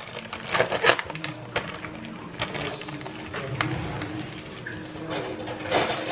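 Plastic film on a tray of ground turkey crackling and tearing as it is pulled open by hand, an irregular run of crinkly clicks and rustles.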